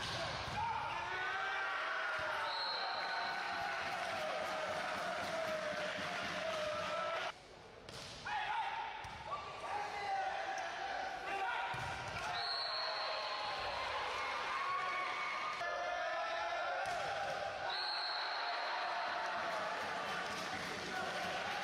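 Volleyball match sound in a large hall: the ball being served, set and spiked, players shouting to each other, and a short high whistle blast three times. There is a brief dip with a cut about a third of the way in.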